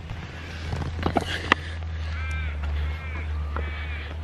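Steady wind and road rumble on a handheld camera during a bike ride, with a few knocks of the camera being handled about a second in. In the second half come three short, arching, caw-like bird calls, evenly spaced.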